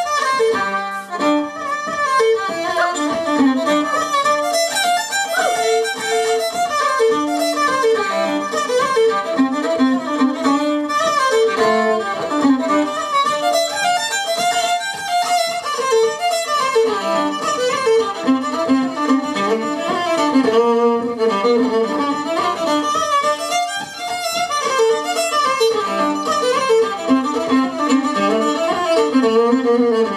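Fiddle playing an Irish traditional reel live, a continuous stream of quick bowed notes.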